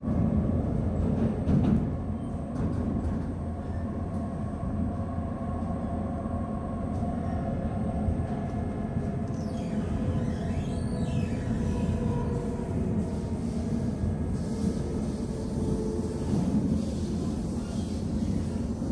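Steady rumble of a moving Singapore MRT train heard from inside the carriage, with faint steady tones above the running noise.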